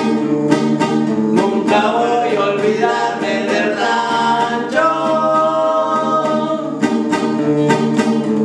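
Two men singing a Mexican corrido in duet to two strummed acoustic guitars. The guitars keep an even strummed rhythm, with the voices coming in about two seconds in and holding one long note near the middle.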